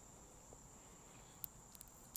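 Near silence: room tone with a thin, steady high-pitched whine and a couple of faint ticks about one and a half seconds in.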